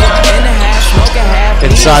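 Hip-hop track with rapped vocals over a heavy, steady bass beat and sharp drum hits about every three-quarters of a second.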